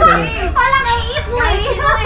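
A group of people calling out and chanting together in lively, overlapping voices.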